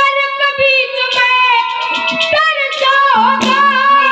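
A boy singing a Haryanvi ragni very high through a microphone, holding long notes that waver and bend, over accompaniment with several sharp percussion strikes.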